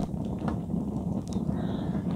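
Rocket stove fire burning steadily with a low rumble as its flame plays on the underside of a wooden post being charred, with a few light crackles.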